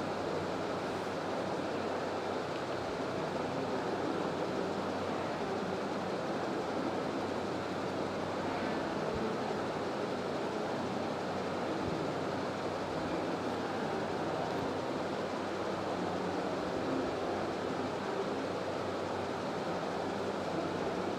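Steady background noise: an even hiss and rumble that holds at one level throughout, with no distinct events.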